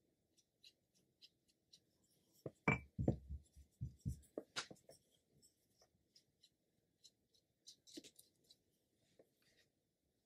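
Ink brush dabbing and stroking on paper in short, soft scratchy ticks, with a cluster of louder knocks and thumps a little before the middle.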